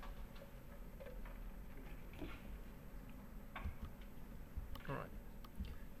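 Quiet room tone with a few faint, irregular clicks, then a man briefly says "all right" near the end.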